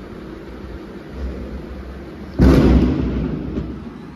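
A firecracker going off outside: a sudden loud bang about two and a half seconds in that dies away over about a second. A fainter low rumble comes just before it.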